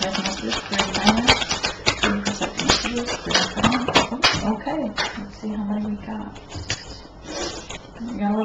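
A deck of tarot cards being shuffled by hand, a quick run of papery clicks and snaps, with a voice humming low notes in between.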